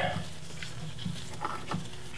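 Wire cutters working a cotter pin out of a track bar's castle nut, giving a few faint metallic clicks over a low steady hum.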